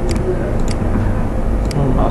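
Steady low background rumble with a few short, sharp clicks of a computer mouse as a field is dragged on screen.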